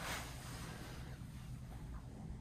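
Quiet room tone with a faint, steady low hum; no distinct sound.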